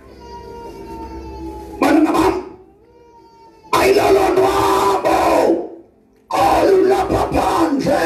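A man's voice preaching loudly through a microphone and PA: a drawn-out, slowly falling call, then three loud bursts of speech with short pauses between them.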